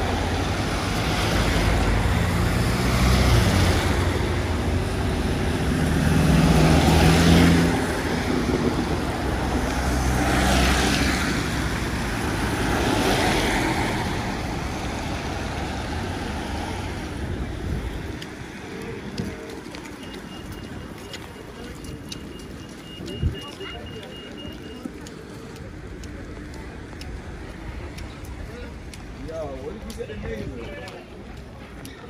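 Road traffic passing on a wet road: cars and vans go by one after another, each swelling with tyre hiss over a low engine rumble. After about eighteen seconds the traffic falls away to quieter street sound, with a thin steady high tone for a few seconds and a single sharp knock.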